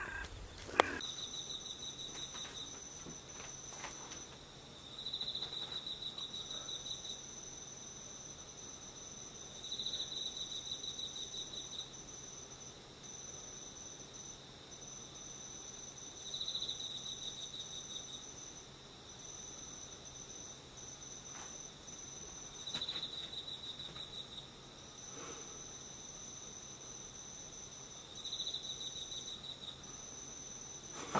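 Insects chirping at dawn: a steady high trill that keeps breaking off, and a lower pulsed call in bursts of about two seconds that repeat roughly every six seconds. A brief sharp knock comes about a second in.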